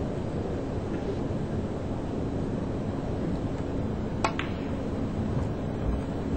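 A snooker shot: a sharp click of the cue tip striking the cue ball, followed at once by a second click of ball on ball, about four seconds in. Steady hall hum runs beneath.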